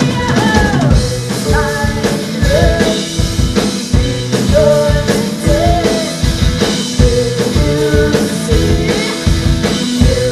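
Live rock band playing: a drum kit keeps a steady beat under electric guitar, bass and keyboard, with held and sliding pitched notes over the top.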